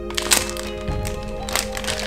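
Background music with held notes, over the crinkling and tearing of a plastic foil sachet being ripped open by hand, sharpest about a third of a second in and again past the middle.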